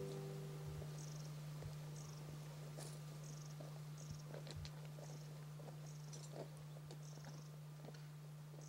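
Faint outdoor ambience: short high chirps repeating about once a second, over a steady low hum, with scattered soft clicks of footsteps on a stony path.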